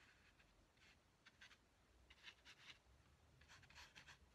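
Faint scratching strokes of a drawing tool on paper, coming in a few short runs as the dog drawing is shaded.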